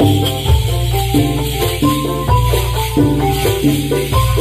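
Live Javanese gamelan music: bronze gongs and metallophones playing a fast run of stepped notes over a deep low hum, with a steady high jingling rattle on top.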